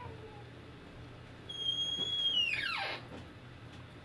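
A single high-pitched squeak about one and a half seconds in, held steady for under a second and then sliding steeply down in pitch, over a low steady room hum.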